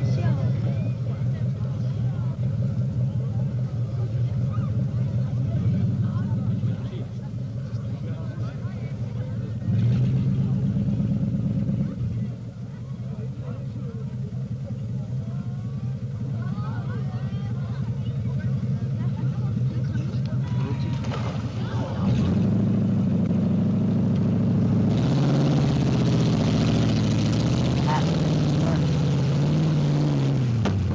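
Off-road Jeep CJ engine running throughout, with crowd voices. It gets louder about ten seconds in and again past twenty seconds, and the revs rise and fall near the end as the Jeep comes down the mud slope.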